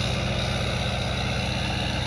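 6.6-litre LBZ Duramax V8 diesel idling steadily, a low, even pulsing hum.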